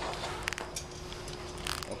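A few sharp metallic clicks and clinks of rope rescue hardware while the lowering line is held stopped, over a steady background hum.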